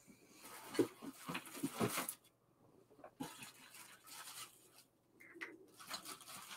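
Faint, irregular rustling with a few soft knocks, busiest in the first two seconds, then sparser: a person shifting about and handling things at a desk.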